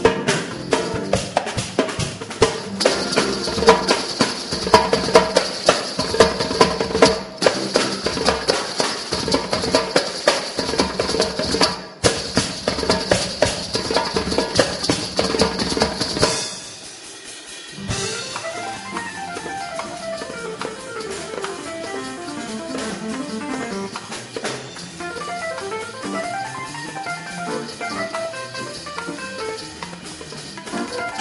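Live band music for a dance: a fast, loud passage led by drum kit and percussion that breaks off suddenly about halfway through, then a quieter melodic keyboard passage.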